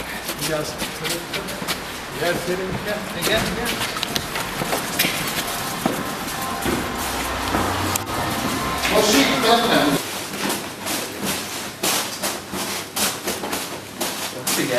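Several men's voices talking indistinctly, with scattered knocks and thuds from handling a heavy load.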